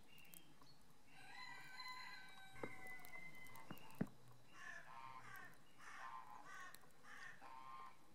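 A rooster crowing faintly: one long crow of about two and a half seconds, followed by a run of about six shorter calls. A sharp click cuts in about four seconds in.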